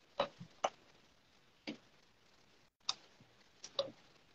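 Light clicks and taps at an irregular pace, about six in four seconds, two of them close together near the end: fingers tapping and handling a smartphone.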